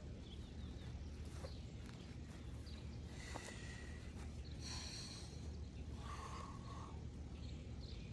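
Backyard ambience: a steady low hum with a few short bird calls in the middle, and a man breathing hard between push-up sets.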